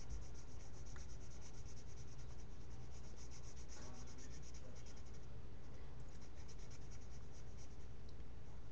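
Felt-tip marker scribbling on paper in rapid back-and-forth strokes, colouring in a small area, with a brief pause a little past halfway before the strokes resume.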